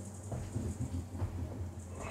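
Low steady amplifier hum with a few soft knocks and rustles as an electric bass guitar is picked up and handled.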